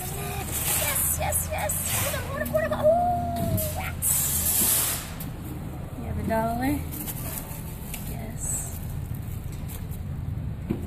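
Indistinct voices and gliding tones over a steady low hum, with a short burst of hiss about four seconds in.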